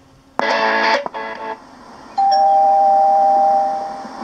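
A doorbell's two-tone ding-dong, about two seconds in and ringing on until it fades near the end, played back from cassette tape through a small portable cassette recorder's speaker. It is preceded, about half a second in, by a brief burst of music.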